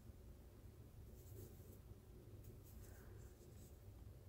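Near silence: faint, soft scratchy rustling of cotton yarn being drawn through stitches on a crochet hook, a few brief scrapes over a low room hum.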